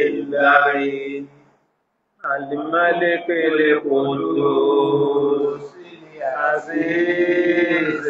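A man chanting Quranic verses in Arabic in long, drawn-out held notes. He breaks off briefly about a second and a half in, then resumes.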